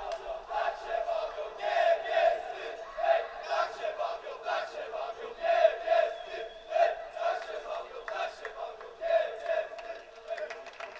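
A group of people shouting and chanting together in repeated, overlapping bursts.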